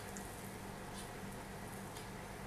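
Quiet, steady room noise with a low hum and a few faint soft clicks, likely from handling the dough and rolling pin.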